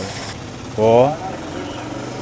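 Steady street traffic noise behind a man's voice, with vehicle engines running, heard through a short pause in his speech.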